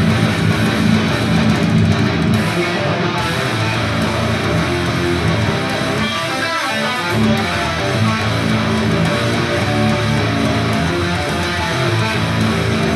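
Solo PRS electric guitar played distorted through an amp rig: low, rhythmic riffing. About halfway through, the low end briefly drops away and a higher single-note line rings out, then the low riffing returns.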